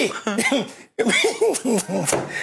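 A man laughing in quick voiced bursts, with a short break about a second in.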